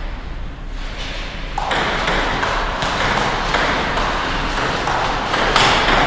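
Table tennis rally: the celluloid ball clicking off the paddles and the table, roughly two hits a second, starting about a second in. A background hiss grows louder about a second and a half in.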